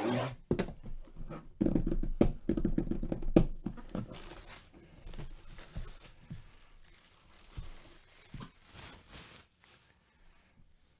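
A cardboard jersey box being handled: a run of knocks and taps with cardboard scraping and rustling, loudest in the first few seconds, then fainter sliding rustles.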